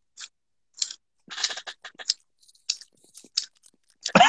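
Short wet mouth smacks and clicks, about a dozen in irregular succession, made as a vocal imitation of the sound of a spoon going into macaroni and cheese.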